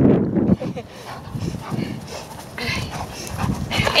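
A Doberman making short excited vocal sounds, the loudest in the first half second, and a woman laughs at the very end.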